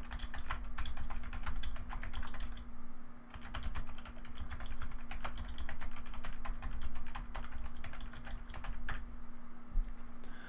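Typing on a computer keyboard in quick runs of keystrokes, with a short pause about three seconds in, stopping about nine seconds in. A steady low hum sits underneath.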